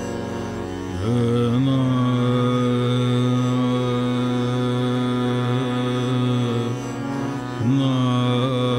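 A male Hindustani classical vocalist singing Raag Rageshree over a steady drone. About a second in, his voice slides up into a long held note that lasts several seconds. It falls away shortly before the end, and a new phrase rises near the end.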